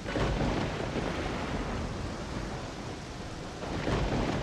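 Steady rain on a car, an even hiss with a low rumble underneath.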